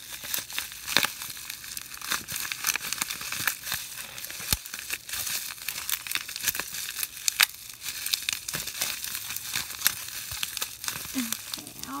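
Plastic packaging crinkling and crackling in irregular bursts as a nail polish bottle is worked free of its wrapping by hand.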